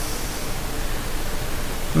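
Steady, even hiss of the recording's background noise, with no other sound.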